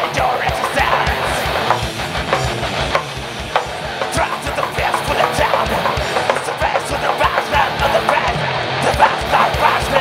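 Heavy metal band playing live, with distorted electric guitars and a drum kit. A rapid, steady run of kick-drum strokes drives it throughout.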